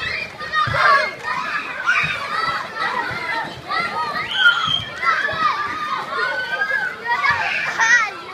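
A crowd of schoolchildren shouting and chattering all at once, many high voices overlapping without a break.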